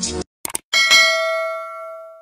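Subscribe-button animation sound effect: two quick clicks, then a bright bell ding, like a notification chime, that rings and fades over about a second and a half.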